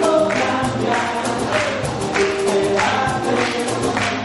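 Live band music: a woman singing into a microphone over guitar and violin, with the audience clapping along on the beat, about a clap every half second or so.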